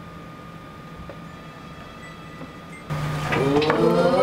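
Faint room tone with a thin steady hum, then about three seconds in, singing starts suddenly and much louder.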